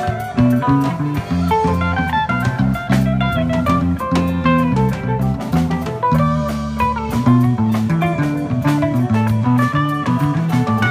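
Live rock band playing an instrumental jam: guitar lead lines over bass and drum kit, with no vocals.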